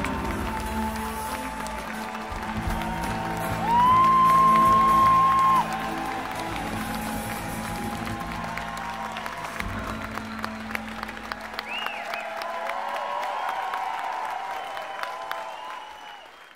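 Concert audience applauding, cheering and whistling as a live rock band's song ends, the band's last notes ringing under the crowd and dying away about ten to twelve seconds in. A loud, steady whistle from someone in the crowd lasts about two seconds, starting about four seconds in, and a shorter whistle comes near twelve seconds. The crowd noise fades near the end.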